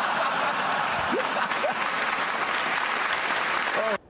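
Studio audience laughing and applauding: a steady, dense wash of clapping with voices laughing through it, which cuts off abruptly at the end.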